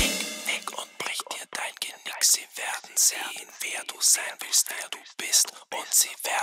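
Heavy metal band cuts off suddenly, leaving a man's whispered vocal with no instruments: short breathy phrases with sharp hissing s-sounds.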